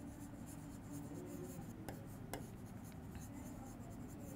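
Faint scratching of a marker pen writing words on a board, with a couple of light clicks about two seconds in.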